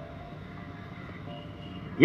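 Low, steady background noise with a few faint, brief tones, in a pause between phrases of a man's speech through a microphone.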